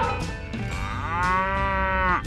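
Cow mooing: the falling tail of one moo at the start, then a second long moo from under a second in that cuts off suddenly near the end.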